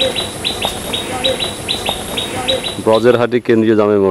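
A bird calling in a rapid, even series of short, high, falling chirps, about six a second, over a steady high insect drone, for roughly the first three seconds. A man's voice comes in near the end.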